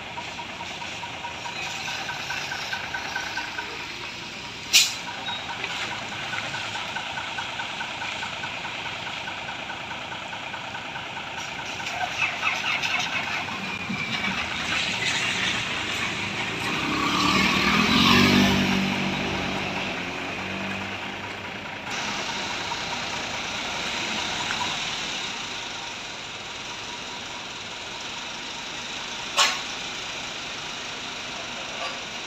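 Mercedes-Benz tow truck's diesel engine running steadily, swelling louder about halfway through, with two short sharp sounds, one a few seconds in and one near the end.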